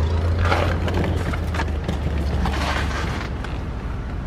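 A 2008 Buick Lucerne's 4.6-litre Northstar V8 idling, a steady low hum. Over it come rustling and a few light knocks as someone climbs into the driver's seat through the open door.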